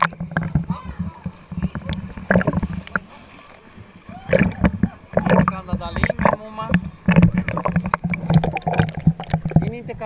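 Pool water splashing and sloshing around a camera held at the surface, washing over the microphone again and again, with a steady low hum underneath.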